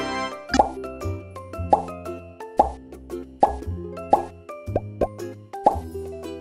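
Upbeat children's background music with a repeating bass line and bubbly plop sounds about once a second.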